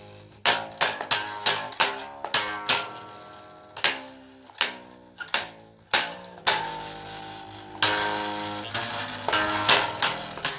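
Guitar played solo: a string of plucked notes and short strummed chords, each ringing out and fading. There is a brief lull about three seconds in, and longer ringing chords in the second half.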